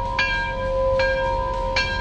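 A bell ringing, struck three times about a second apart, its tones ringing on between the strikes.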